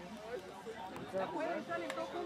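Several voices of players and onlookers talking and calling out over one another, with one short sharp knock near the end.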